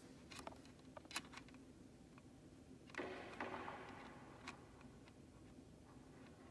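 Quiet room tone with a few faint clicks and a brief rustle about halfway through, from handling at a pipe-organ console before playing begins; no notes sound yet.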